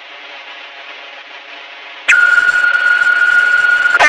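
Answering machine beep heard through a phone line on a worn cassette copy: faint line and tape hiss, then about halfway through a loud, steady high tone that holds for nearly two seconds. The beep marks the start of the next recorded message.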